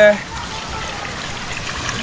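Water pouring steadily from a plastic jerrycan into a metal pot of rice.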